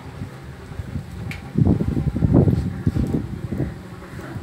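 Low, irregular rumbling buffeting on the camera microphone, swelling in the middle for about two seconds, with a faint click just before.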